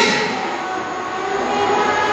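A pause in a man's speech at a microphone, filled by a steady noise with a faint low hum underneath.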